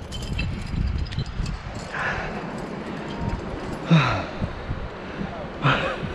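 Wind buffeting a head-mounted camera's microphone in an uneven low rumble, with a few faint clicks early on and short breathy voice sounds about two and four seconds in.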